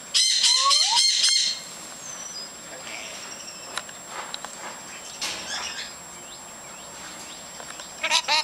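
Duyvenbode's lorikeets chattering: a loud, rapid screechy burst in the first second and a half, then softer scattered chatter calls.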